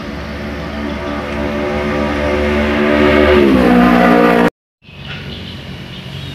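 An engine running, growing steadily louder, its pitch shifting a little after three seconds; it cuts off abruptly about four and a half seconds in, followed by a quieter, mixed workshop hum.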